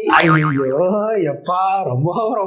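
A short, wobbling, springy comic sound that starts suddenly, followed by a man's voice about a second and a half in.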